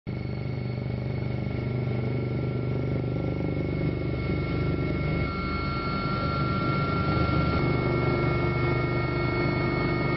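Helicopter noise heard from on board: a steady, loud drone of rotor and turbine with constant high whining tones above it.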